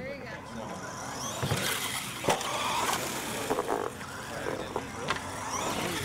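Radio-controlled monster truck running over turf and wooden jump ramps, with sharp knocks about two seconds in and again about five seconds in.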